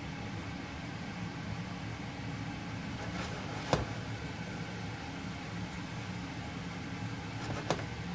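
Diced apples frying in a non-stick pan on an induction hob: a steady hiss over a low hum, with a sharp click a little before halfway and another near the end.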